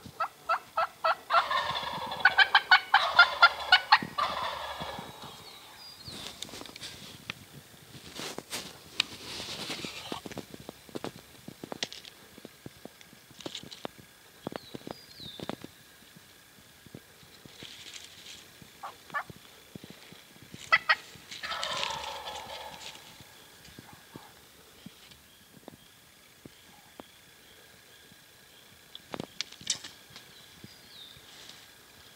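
Male wild turkey gobbling: a loud, rapid, rattling gobble lasting a few seconds about a second in, and another gobble about two-thirds of the way through, with scattered light clicks between.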